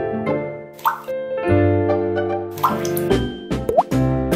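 Cheerful children's background music, with a few short popping sound effects and a quick rising whistle near the end.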